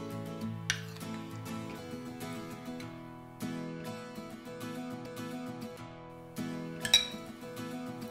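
Background music with plucked, guitar-like notes. Near the end a metal spoon clinks sharply against a bowl while yogurt spread is scooped.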